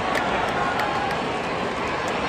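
Stadium crowd noise: the steady din of a large crowd of spectators, many voices blended together.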